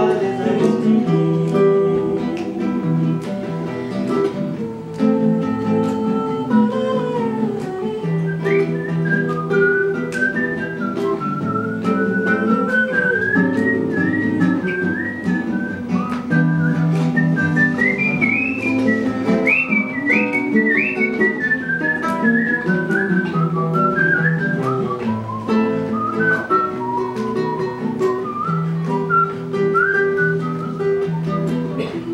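Two classical nylon-string guitars playing a plucked accompaniment. From about eight seconds in, a whistled melody carries the tune above them in a high, clear line of rising and falling notes.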